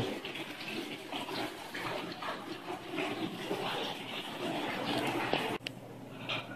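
Outdoor stone fountain splashing steadily, cutting off abruptly near the end.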